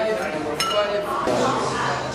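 A glass clinks once about half a second in, with a short high ring, over a background of voices.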